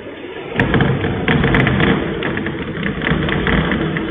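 Chalk writing on a blackboard: a quick run of taps, knocks and scrapes through the board, starting about half a second in.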